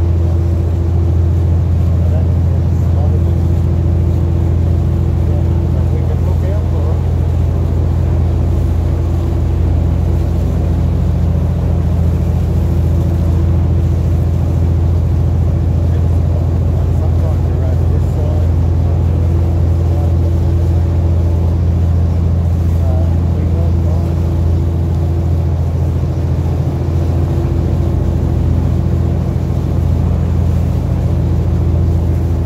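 A boat's engine running steadily at cruising speed: a constant low drone with an even hum, heard from on board.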